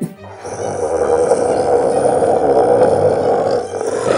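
A long, rough growling roar from a dinosaur (T-Rex) sound effect, over background music. It builds up about half a second in and fades near the end.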